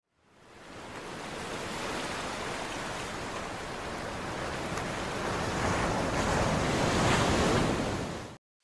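Ocean surf sound effect: a steady rush of breaking waves that fades in and swells slowly, loudest near the end.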